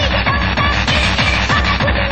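Fast electronic rave dance music with a steady pounding kick drum, heard as an off-air recording of an FM radio broadcast, its top end cut off.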